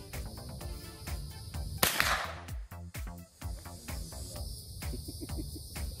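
A single rifle shot about two seconds in, fired from a bipod-mounted rifle, with a short ringing tail after the crack.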